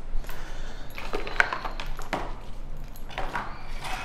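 Handling noise from dive gear being put down and picked up: scattered clicks and light knocks, a cluster from about one to two seconds in and more near the end.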